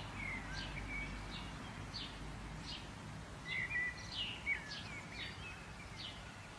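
Several songbirds chirping: short high notes that drop in pitch, a few each second and busiest around the middle, over a steady outdoor background hiss.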